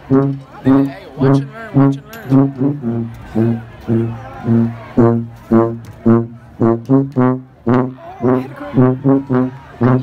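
Marching band brass section with sousaphones, playing a loud, rhythmic tune in short punchy notes, about two a second, over a heavy bass line.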